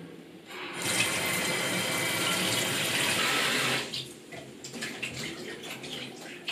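Kitchen tap running into a stainless steel sink for about three seconds, then turned off, followed by a few light knocks and clinks.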